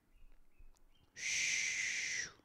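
A woman blowing a long breath out through pursed lips close to the microphone. It is a single airy hiss of about a second, starting about a second in.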